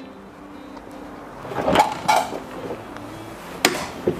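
Faint low hum, then a few knocks around the middle and a sharp click near the end as the Fiat Ducato's rear cargo door latch is worked by hand.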